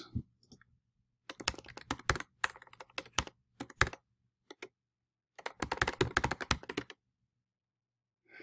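Typing on a computer keyboard: quick runs of keystrokes with short pauses between them, the last run ending about a second before the end.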